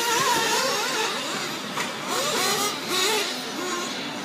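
Several 1/8-scale nitro RC buggies' small two-stroke glow engines running on the track, a whine whose pitch rises and falls as they rev and back off through the corners.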